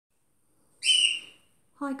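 A short, high-pitched whistle-like tone, heard once about a second in, that fades away within half a second.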